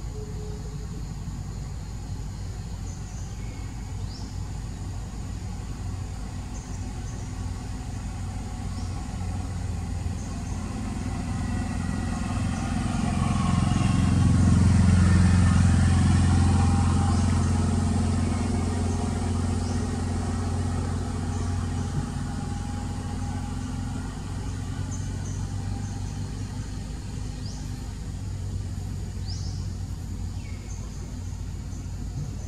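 A motor vehicle's engine passing by: it grows louder over several seconds, is loudest about halfway through, then fades away again.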